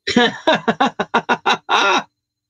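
A man laughing: a rapid string of about ten short ha-ha pulses, each falling in pitch, ending in a longer one near the end.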